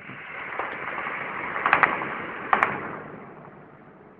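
Distant gunfire: a few sharp shots in two quick clusters a little under and a little over two seconds in, over a rushing noise that swells and then fades away.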